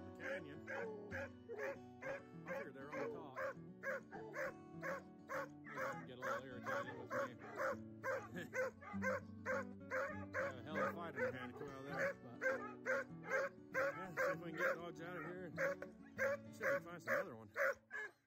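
Hounds barking treed at a mountain lion up a tree, a fast steady chop of barks about three a second, over background music.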